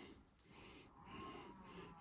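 Near silence: faint room tone while roast chicken is picked apart by hand.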